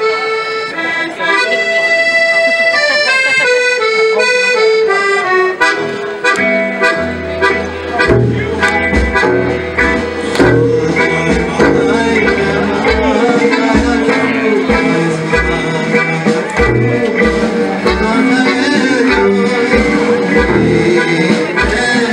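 Klezmer band playing live: a piano accordion carries the melody alone at first, then about six seconds in a double bass and drums join with a steady beat.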